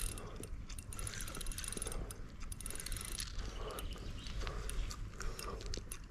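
Spinning reel clicking in a rapid, irregular run of ticks while a large pike is fought on light line.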